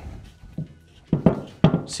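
Coil spring being turned by hand on a threaded UTV coil-over shock body to set preload: a quiet moment, then a few short metal knocks and clinks from about a second in.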